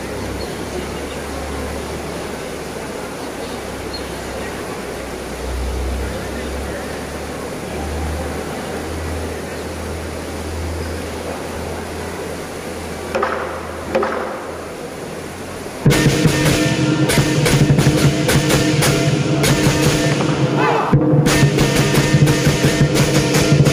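Crowd murmur over a low rumble. About three-quarters of the way in, the lion dance ensemble of drum, cymbals and gong strikes up suddenly and loudly, with rapid repeated strikes and ringing metal.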